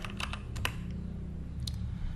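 Typing on a computer keyboard: a quick run of keystrokes in the first half-second or so, then one more keystroke near the end, over a low steady hum.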